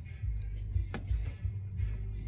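Background music, mostly a low bass line, with one sharp click about a second in.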